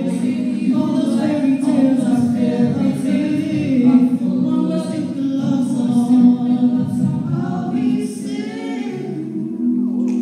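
A cappella vocal group singing in close harmony into handheld microphones, several voices holding chords with no instruments. The singing eases to a quieter held chord near the end.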